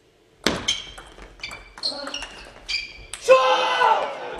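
Table tennis rally: the ball clicking off bats and table, mixed with high squeaks, starting abruptly about half a second in. It ends with a loud shout a little over three seconds in as the point is won.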